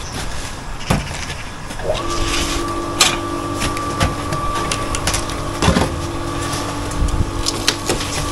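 Occasional sharp knocks and clinks of block-laying work, concrete blocks and a trowel being handled. About two seconds in, a steady machine hum with two constant pitches starts and keeps going.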